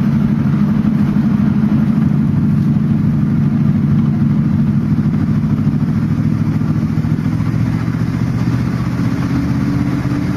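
Car engine running steadily while the car drives along, with road and wind noise. The engine's pitch rises slightly near the end.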